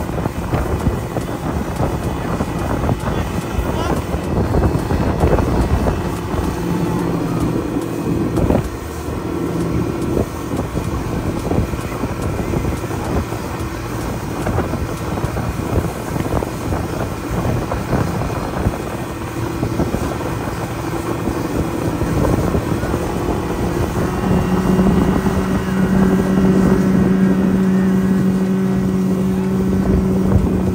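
A 90 hp outboard motor running at speed as the boat tows a tube ride, with wind buffeting the microphone and water rushing in the wake. The engine's steady drone comes up stronger in the last few seconds.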